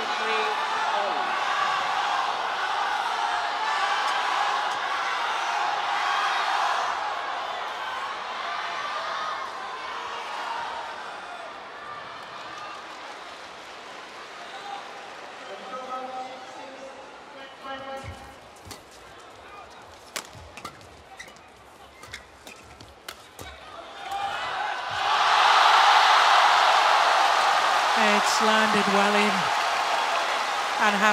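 An indoor badminton arena crowd is loud at first and then quietens. Then come several seconds of quick, sharp hits of rackets striking a shuttlecock in a rally. About 25 seconds in, a loud crowd roar erupts as the rally is won.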